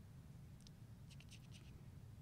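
Near silence: low room hum with a few faint laptop keyboard clicks, one just past half a second in and a quick run of them about a second in.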